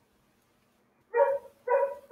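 A dog barking twice in quick succession about a second in, short sharp barks.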